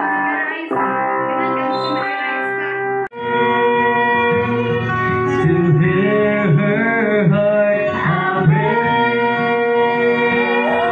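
Music playing: a song with guitar and singing. It drops out sharply about three seconds in and picks up again with a new passage.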